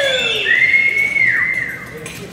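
Spectators' cheering whistles at a reining run: several loud, overlapping whistles, one held high note that drops away about a second and a half in, with a short falling yell at the very start.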